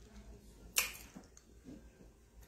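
One sharp, short click a little under a second in, followed by a fainter click, over quiet room tone.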